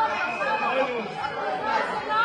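Several men shouting over one another in a heated argument, a jumble of raised voices with no single speaker standing out.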